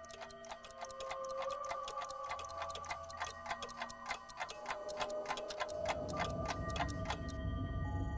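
Clock ticking fast and evenly over several held tones. The ticking stops near the end as a low rumble comes in.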